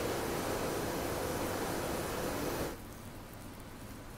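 Steady rushing noise of a selective soldering machine running while its solder nozzle solders header pins, dropping suddenly about three-quarters of the way in to a much fainter hiss.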